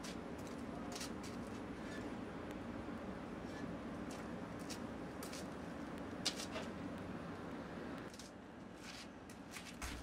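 Faint steady outdoor hum with a few light clicks and knocks of ceramic pieces being handled on a raku kiln's shelf, the sharpest about six seconds in; the hum drops away near the end.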